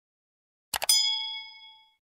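Like-button sound effect: a few quick clicks, then a bright, clear ding of several ringing tones that fades away over about a second.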